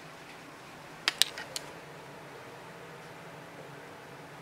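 Low, steady hum of small PC fans and a bilge pump circulating water through a car-radiator heater, with a quick cluster of clicks about a second in, typical of air bubbles in the water loop.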